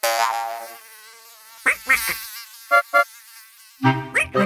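Cartoon sound effect of an insect buzzing. It starts loud and fades over the first second, then carries on faintly, with a few short buzzes in the middle.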